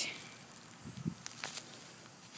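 Faint footsteps and rustling on a dry grass lawn, with a dull thump about a second in.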